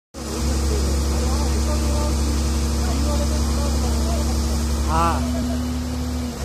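Mobile crane's diesel engine running steadily with a deep, even drone, while it hoists a metro coach. A man's voice calls out near the end.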